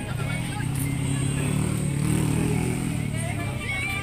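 A vehicle engine running steadily close by, fading out about three and a half seconds in, with voices faintly over it.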